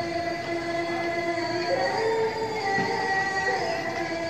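Long steady held tones sounding together at several pitches, stepping to a new set of pitches about halfway through, like sustained musical notes.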